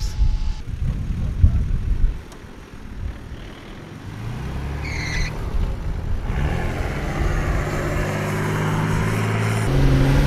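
A low wind rumble on the microphone for about two seconds. Then, from about four seconds in, a 4WD's engine (a Nissan Patrol wagon) runs under load up a sand dune, its revs and loudness climbing steadily, with a sharper rise in revs just before the end.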